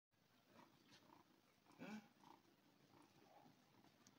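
Young kitten giving one short meow a little before halfway through, while it reaches hungrily for a feeding bottle, with faint small handling sounds around it.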